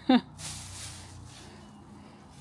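A garden fork digging in around the roots of an oleander shrub: one short scraping rustle of soil and stems, then a fainter one.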